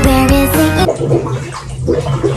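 Pitched music for about the first second, then water splashing in a filled bathtub, with low music under it.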